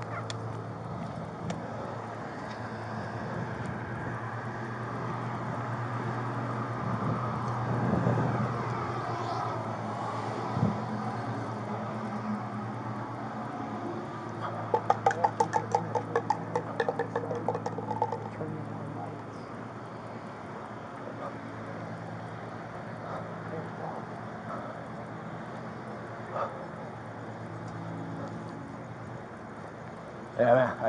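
Steady low hum of a running engine. About halfway through, a run of quick, evenly spaced clicks lasts some four seconds.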